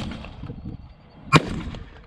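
A shotgun shot about a second and a half in, ringing out briefly before it fades. At the start, the tail of another shot fired just before is still dying away.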